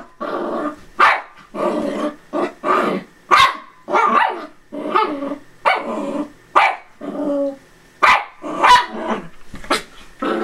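Small dogs, a miniature poodle and a longhaired miniature dachshund puppy, barking and growling in play: a steady run of short barks, about two a second, mixed with longer growls.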